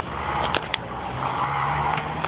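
Street traffic noise, a motor vehicle going by, with a low engine hum setting in about halfway through. Two short clicks come about half a second in.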